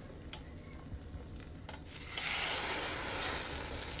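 French toast frying in hot canola oil in a nonstick pan: a faint sizzle with a few light clicks, swelling about halfway through into a louder steady sizzle as a second egg-soaked slice goes into the pan.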